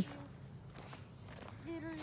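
Quiet outdoor background with nothing prominent, and a faint voice shortly before the end.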